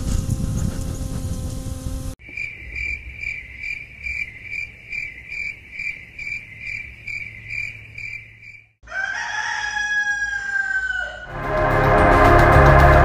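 A microlight trike's engine runs steadily for about two seconds, then cuts to crickets chirping in an even rhythm of about three chirps a second. Near the end a rooster crows once, a long call falling in pitch, and music begins just before the end.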